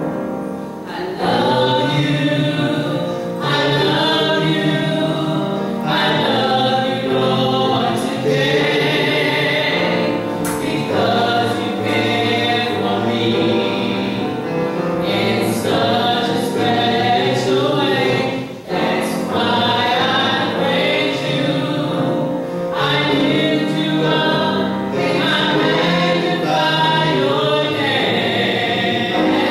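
A small vocal group of four singing a gospel song together, with held notes and one short break about two-thirds of the way through.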